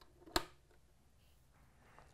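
A single sharp click about a third of a second in: a 3.5 mm patch cable plug being pushed home into a jack on the Moog Mother-32's patch bay.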